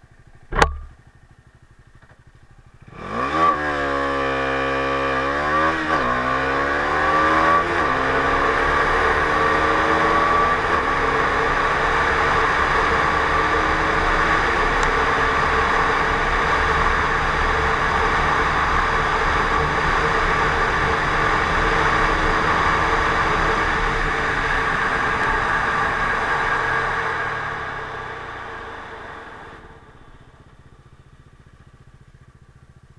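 Bajaj Dominar 250's single-cylinder engine at full-throttle acceleration from a standstill, after a brief idle and a sharp click. The engine note climbs and drops with each quick upshift in the first few seconds, then holds steady at high speed with wind noise on the microphone, and fades near the end as the throttle closes.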